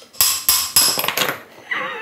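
Small hard airsoft gearbox parts (the cylinder head assembly) being handled and fitted together in the fingers: several sharp clicks and a clattering scrape in the first second.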